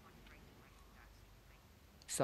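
Near silence: faint room tone, with a few faint short blips.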